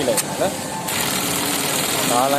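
Juki LK-1900ANSS computer-controlled bartack sewing machine running through a bartack cycle: a sharp click just after the start, then a steady high-pitched mechanical whir from about one second in.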